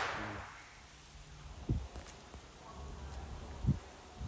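The echo of a Rossi RS22 .22 rifle shot dying away through the woods over about a second, followed by two short, dull thumps about two seconds apart.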